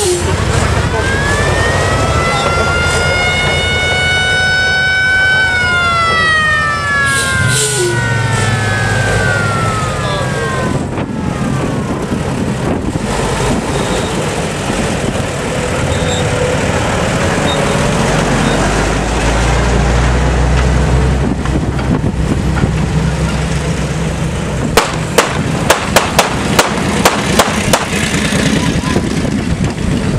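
A siren winds up, rising in pitch for about four seconds, then winds down and fades, over the steady running of passing WWII military truck engines. Near the end comes a quick run of sharp, loud cracks.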